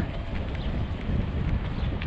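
Wind buffeting an action camera's microphone while riding a bicycle, a steady rushing noise with low, fluttering rumble.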